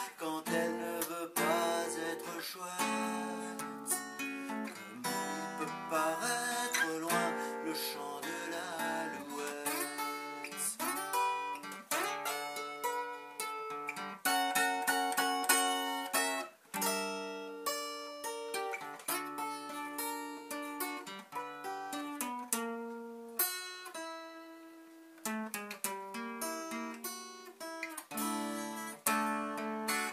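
Solo acoustic guitar playing a slow instrumental passage, single notes and chords ringing out one after another, briefly softer about three-quarters of the way through.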